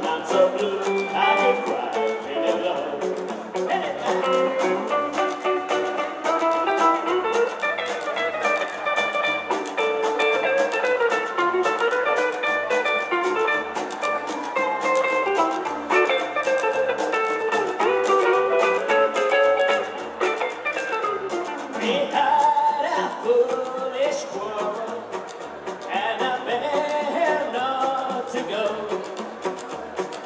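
Live rockabilly band playing an instrumental break: a hollow-body electric guitar takes the lead over upright bass, strummed acoustic guitar and drums.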